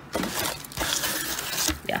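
Black shredded crinkle-paper packing filler rustling and crackling, with the cardboard box being handled, as the box is repacked by hand.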